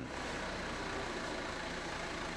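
JCB Loadall telehandler's diesel engine running steadily while it holds a straw bale on its forks.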